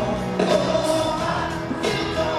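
Live pop band music with singing, played over an arena sound system and heard from among the audience.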